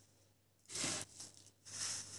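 Coarse salt being scooped and sprinkled by hand: several short, faint gritty rustles.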